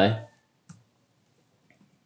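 A few faint, sparse computer keyboard clicks as code is typed; the clearest comes a little under a second in, with two fainter ones near the end.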